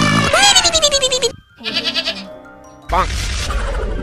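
Comic sound effects laid over background music: a loud, wavering cry that falls in pitch over about a second, a short pitched burst, then a sudden noisier stretch of music about three seconds in.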